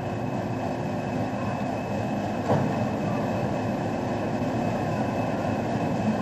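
Passenger train running slowly into a station: a steady rumble of wheels and carriages with a faint steady whine, and a single knock about two and a half seconds in.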